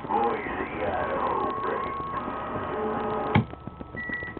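CB radio receiving another station: a garbled, hard-to-follow voice mixed with steady whistling tones. A sharp click about three and a half seconds in cuts the signal off.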